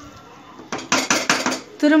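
Metal spatula knocking and scraping against the side of a metal pressure cooker pot while stirring cooked biryani rice: a quick run of about six clinks in under a second.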